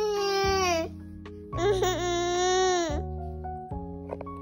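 A toddler whining twice in drawn-out, high-pitched cries of about a second each, over soft background music.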